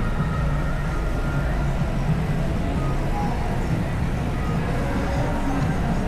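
City street ambience: a steady low rumble of road traffic with faint voices of passers-by.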